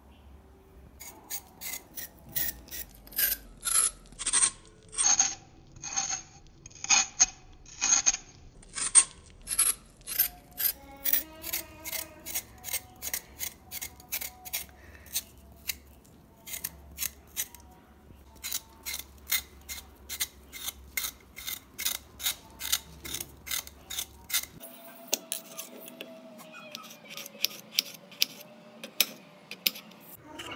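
A vegetable peeler scraping the skin off a raw potato in quick repeated strokes, about two to three a second.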